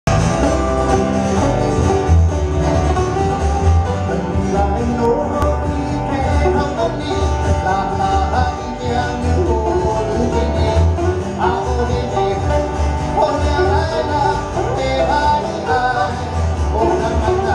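Live acoustic guitars strumming and picking a Hawaiian song, with a steady low bass line underneath. A man's voice sings over the guitars in the second half.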